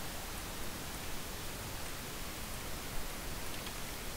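Steady hiss of a microphone's background noise, with a faint click about three seconds in.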